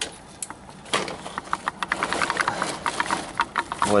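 Rapid, irregular clicking and popping, about eight a second, typical of pressurised water gurgling and spitting out of a leaking pipe joint.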